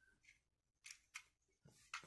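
Near silence with a few faint, short clicks: a screwdriver tip pressing into a pistol magazine's baseplate to release it, two of the clicks coming close together around the middle.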